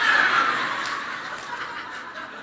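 An audience laughing together. The laughter is loudest at the start and fades away.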